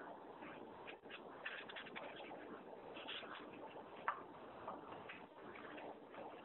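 Faint background hiss of an open conference-call telephone line, with scattered faint clicks and rustles, one sharper click about four seconds in.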